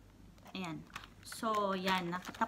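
Near-silent room for about half a second, then a woman's voice speaking in short bits, with a few light clicks and taps mixed in.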